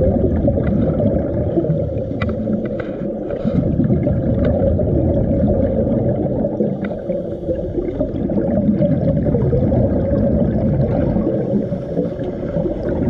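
Underwater camera audio: a steady muffled rumble and gurgle of water and scuba divers' exhaled bubbles, with a few faint clicks.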